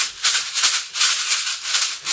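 Loose BBs rattling inside a G36-style airsoft high-capacity magazine shaken rapidly by hand, about four to five shakes a second, like a maraca ('tactical maracas').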